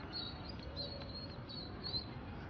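Small birds chirping: a string of short, high chirps over faint outdoor background noise.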